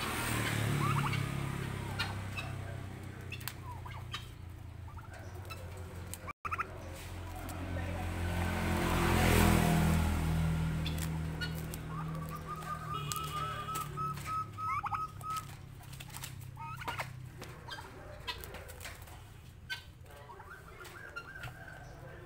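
Domestic turkeys calling while pecking at papaya leaves held through wire mesh: short call notes and, a little past halfway, a rapid chattering trill, over small pecking clicks. A low rumbling sound swells and fades about halfway through, the loudest thing heard.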